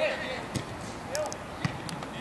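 A football being kicked on artificial turf: a couple of sharp thuds, about half a second in and again after one and a half seconds, with short shouts from players.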